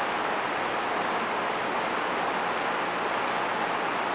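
Steady, even hiss with nothing else over it: the background noise of a sermon recording between sentences.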